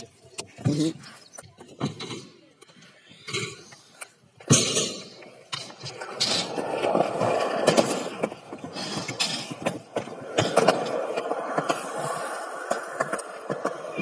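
Stunt scooter wheels rolling on concrete for several seconds. A sharp knock comes first, about four and a half seconds in.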